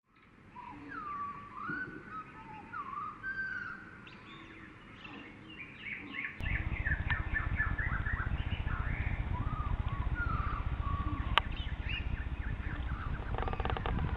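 Songbirds singing and chirping in woodland, many short whistled glides and twitters. A steady low rumble comes in suddenly about halfway through, and there is one sharp click a little later.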